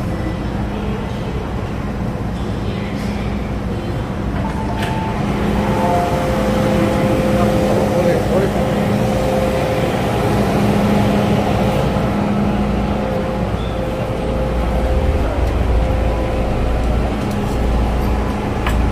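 Metro train and platform noise: the steady hum of a train standing at the platform, with the murmur and footsteps of passengers boarding, louder from about five seconds in. A deeper rumble grows in the last few seconds.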